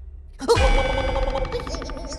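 Animated-film sound effect: a sudden metallic clang with a low boom about half a second in, ringing on in many bell-like tones. Near the end a wavering, warbling tone joins it.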